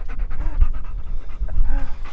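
German shepherd panting rapidly right at the microphone, over a steady low rumble.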